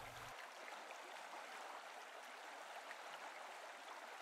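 Very faint, steady hiss of background ambience with no distinct sounds: near silence.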